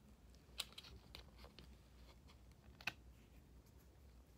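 Near silence with a few faint clicks and light rustles of fingers handling a small fabric flower against a plastic ornament; the two clearest ticks come about half a second in and just before three seconds.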